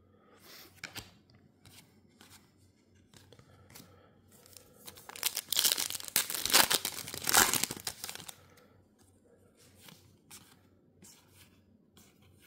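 A trading card pack's foil wrapper being torn open, a noisy tearing that lasts about three seconds midway. Light handling sounds of cards and wrapper come before and after it.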